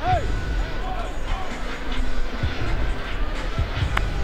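Music playing in a football stadium, with faint background voices and a steady low rumble of crowd and field sound.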